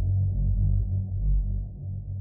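Background music: a low drone slowly fading out.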